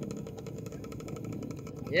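A small dirt bike engine running steadily at low speed.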